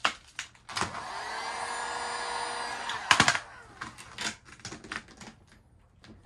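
A heat gun blows steadily for about two seconds and then cuts off. Vinyl wrap film then crackles loudly as it is stretched by hand over the bumper, followed by lighter crinkles.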